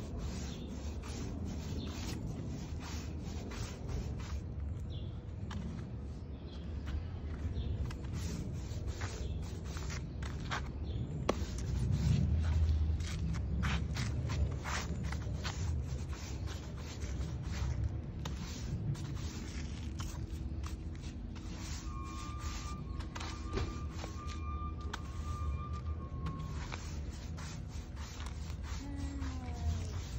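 Plastic-bristle push broom scrubbing over stamped concrete fake stones in a long run of short scraping strokes, working colouring into the surface.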